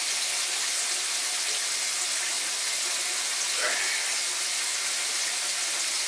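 Water running steadily from a tap into a sink.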